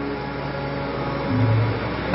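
Harmonium holding steady reed notes, with a brief low tone about a second and a half in.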